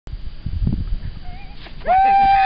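Low wind rumble on the microphone, then near the end a person lets out a loud, long, high-pitched whoop, cheering a skier's run.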